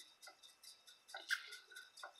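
Faint, uneven run of small ticks, several a second, from a computer mouse's scroll wheel as a web page is scrolled, with a slightly louder click a little past halfway.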